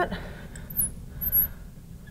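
Marker writing on a glass lightboard, with a couple of short, faint, high squeaks from the tip on the glass.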